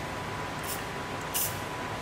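Two brief hisses from an aerosol spray-paint can, short taps of the nozzle about a second apart, over a low steady background hiss.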